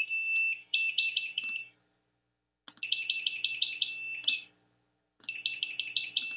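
Small 3-volt piezo buzzer giving a shrill, high-pitched electronic tone in three bursts of rapid stuttering beeps, each burst a second or two long with short pauses between.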